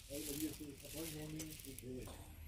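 Faint background voices talking at a distance, with no close speech and no distinct other sound.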